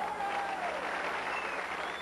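Audience applauding in a bowling centre, a dense steady clatter of clapping, greeting a converted seven-pin spare.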